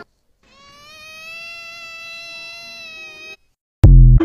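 A single long, cat-like meow lasting about three seconds, held nearly level in pitch. Near the end a sudden, much louder bass hit: the start of the TikTok end-card sound.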